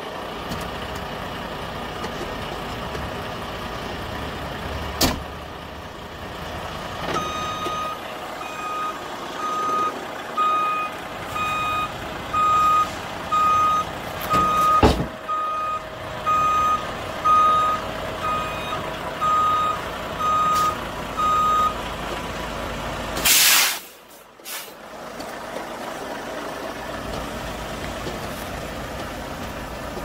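Volvo semi-tractor's diesel engine running while it backs under a trailer, its reversing alarm beeping about once a second for some fifteen seconds, with a sharp knock midway. A door thump comes about five seconds in, and near the end a short, loud burst of air hiss from the air brakes.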